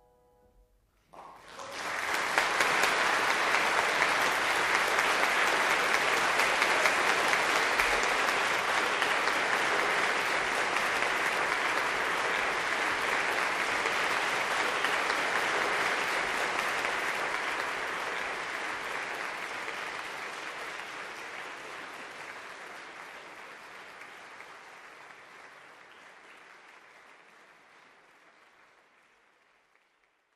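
Audience applause after a piano piece in a concert hall. It breaks out suddenly about a second in, quickly reaches full strength and holds, then slowly dies away over the last dozen seconds or so.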